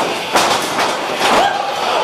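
Rattling thuds of bodies hitting a wrestling ring, two heavy hits, followed by a short shout.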